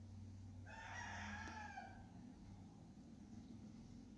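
A single faint animal call, about a second long, with its pitch dropping at the end.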